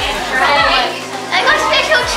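A crowd of children chattering and calling out over one another in a large room, their high voices overlapping with no single speaker standing out.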